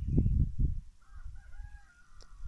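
Wind buffeting the microphone in a loud low rumble, then a distant rooster crowing from the valley below: one thin, drawn-out call lasting over a second.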